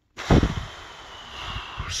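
A man's long breathy exhale, like a sigh, lasting most of two seconds and opening with a low thump, as he pauses before speaking.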